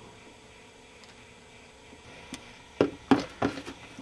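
Quiet room tone, then a few sharp clicks and knocks in the last second and a half as the aluminium electrolytic capacitor can is picked up and handled.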